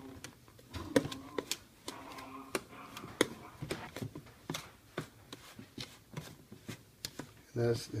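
Hands crumbling cold margarine into a flour crumb-topping mixture in a bowl: irregular clicks and taps of fingers against the bowl, several a second, with a soft rustle of the crumbly mix.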